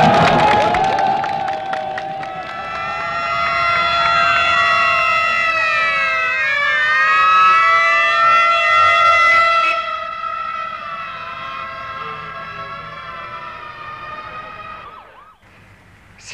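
Several motorcade escort sirens sounding together as steady pitched tones over crowd noise at first. Their pitches slide down and cross each other about halfway through as they pass, then they fade away and stop just before the end.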